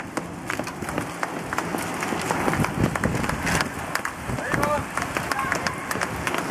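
A pack of road racing bicycles rides close past: a steady rush of tyres and drivetrains with scattered sharp clicks throughout. Faint voices come in about two-thirds of the way through.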